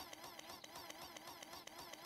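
A cartoon robot's mechanical ticking: a faint, fast, even run of ticks, many a second, as it moves.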